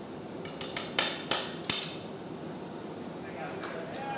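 Sharp knocks on a steel glassblowing pipe, a few light taps and then three hard ones in quick succession about a second in: the pipe is being struck to crack the hot glass vessel off at the line just squeezed in with jacks.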